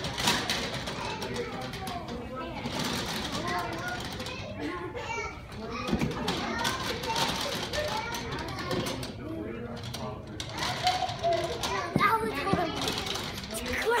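Children playing and chattering in an indoor play area, their voices overlapping, with a couple of short thumps near the middle and near the end.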